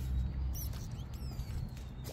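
Faint high chirps and squeaks over a low steady rumble.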